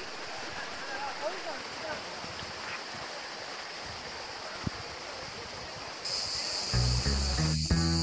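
A mountain stream rushing over rocks, with faint voices of people swimming. About six seconds in, a steady high insect drone starts, and soon after, background music with a steady beat comes in, louder.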